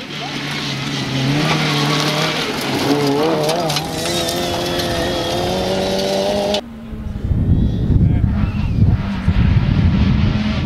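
Suzuki Swift rally car engine under hard acceleration on a gravel stage, its note climbing steadily in pitch. About two-thirds of the way through, the sound cuts off abruptly to a loud low rumble of a car running on gravel, with a faint engine note under it.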